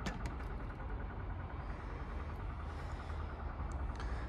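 A steady low mechanical hum with a faint fast, even ticking pattern running through it, with a few light clicks near the start and one just before the end.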